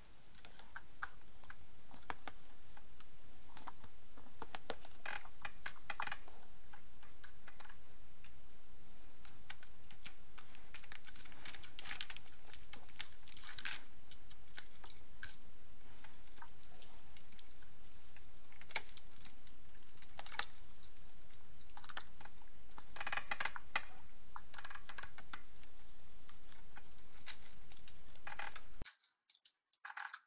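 Trail-camera audio: a steady hiss with irregular scratching and clicking as a black bear climbs a tree and grips the monitoring station's frame. The clicks come thickest about three quarters of the way through, and the sound cuts off just before the end.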